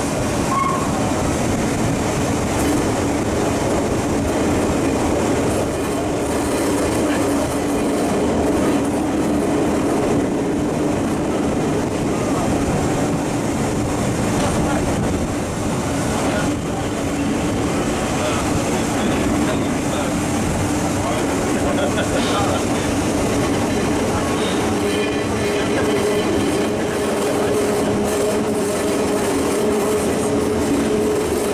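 Vintage railcar Are 4/4 25 running through a tunnel, heard from inside its passenger compartment: a steady rumble of wheels on the rails with a constant motor hum. A second, higher-pitched hum joins near the end.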